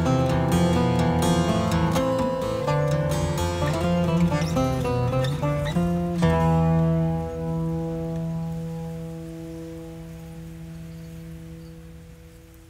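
Cretan laouto played solo: a quick plucked melody over a ringing low drone, closing an instrumental piece. About six seconds in it lands on a final chord that is left to ring and slowly fade away.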